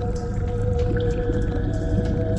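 Ambient electronic drone music of sustained pure tones over a low rumble, with a new higher tone coming in near the end.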